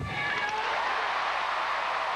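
An arena crowd breaks into applause and cheering, swelling up about half a second in and holding steady, just after a thump at the start from the dismount landing on the mat.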